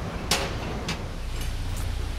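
Forged steel rods clinking once, sharply, as they are handled on a metal work table, followed by a few fainter ticks, over a steady low machinery hum that grows stronger in the second half.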